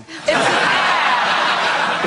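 Studio audience laughing together, a dense crowd laugh that swells in about a quarter second in and holds steady.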